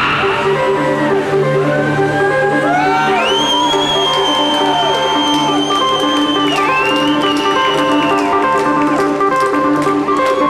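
Electronic synthesizer music: held synth tones and a repeating pattern of short notes, with lines that glide up and down in pitch. About three seconds in, a high tone slides up and holds for a few seconds.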